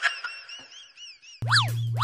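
Cartoon-style comedy sound effects: first a fast run of small chirping whistle notes, about five a second. Then, near the end, two quick boings, each a swoop up and back down in pitch over a low hum, about half a second apart.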